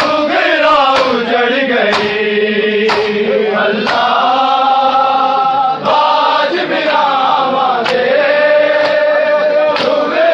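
A group of men chanting a noha, a mourning lament, in unison, their voices drawn out in long, gliding lines. Sharp slaps from the mourners beating their chests in matam fall in time, about once a second.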